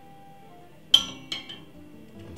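Kitchenware clinking twice about a second in, a sharp clink with a short ring and then a lighter one, over soft background music.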